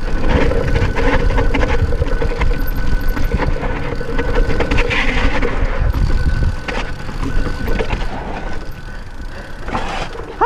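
Wind buffeting the microphone and knobby tyres rolling over a dirt trail, with the clatter and rattle of a Yeti SB6 full-suspension mountain bike over bumps on a descent. It is loud for the first six seconds or so, then eases off somewhat.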